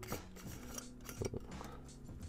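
A metal drink can being picked up and handled: a small click at the start, then a quick cluster of sharper metallic clinks a little past the middle.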